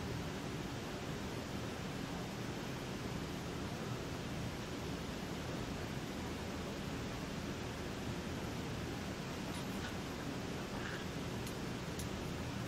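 Steady hiss of room tone in a lecture room, with a couple of faint clicks near the end.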